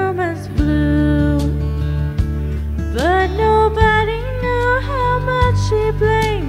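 A woman singing long held notes that slide between pitches into a microphone, with no clear words, over a slow country accompaniment of guitar and bass. The voice comes in about three seconds in, after a brief sung slide at the start.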